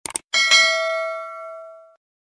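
Notification-bell sound effect: a quick double mouse click, then a bright bell ding that rings on with a steady tone and fades away over about a second and a half.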